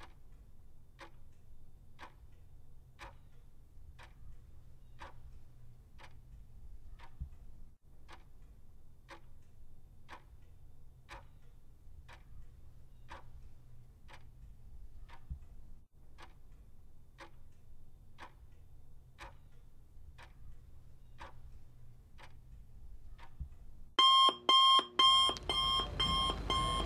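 Clock ticking about once a second as a timer sound effect, then, near the end, a loud alarm-clock ring in rapid repeated beeps signalling that the timed answering period is up.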